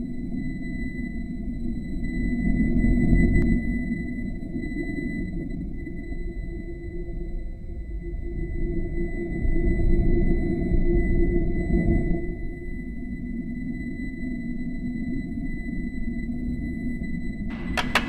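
Low, rumbling cinematic drone from a film soundtrack. It swells and fades a couple of times, with a thin steady high tone held above it. Sharp drum hits break in near the end as the music starts.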